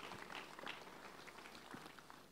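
Near silence: faint room tone with a few faint small sounds.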